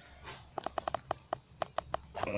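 Light, irregular clicks and ticks, about a dozen in a second and a half starting about half a second in, from hands working the wire and beeswax foundation in a wooden beehive frame.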